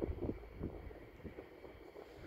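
Wind buffeting the camera microphone: a low rumble that eases after about the first half second.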